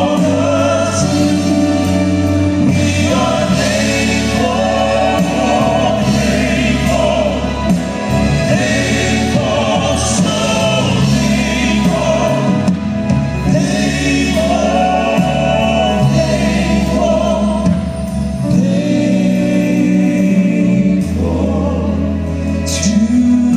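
Southern gospel male vocal quartet singing in close harmony with live band accompaniment, heard from the audience of a large hall.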